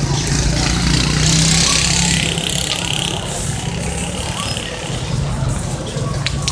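People's voices over a steady low hum and a rushing outdoor noise, the rushing strongest in the first half.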